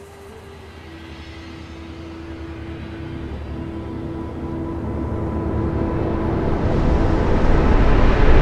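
Soundtrack swell: a low rumbling drone with a few held tones grows steadily louder and builds into a rushing whoosh near the end.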